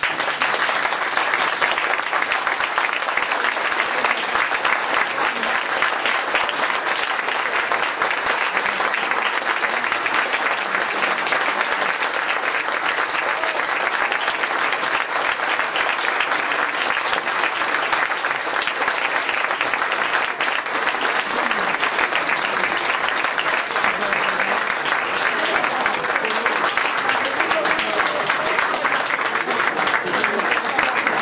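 Audience applauding steadily with dense clapping, with a few voices in the crowd.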